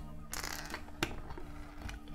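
Plastic LEGO bricks clicking as a cone piece is pressed onto a build by hand, with a few short clicks and one sharp click about a second in. Soft background music plays underneath.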